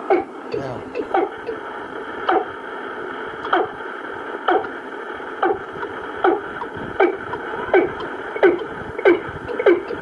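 Recorded bird calls, a female-bird lure tape, played from a cassette through a radio-cassette player's speaker: about a dozen short falling calls, roughly one a second and coming faster toward the end, over steady tape hiss and hum.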